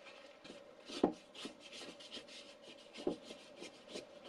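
A spatula scraping and stirring flour and water into a shaggy bread dough in a mixing bowl, in quick repeated strokes, with two louder knocks about one and three seconds in.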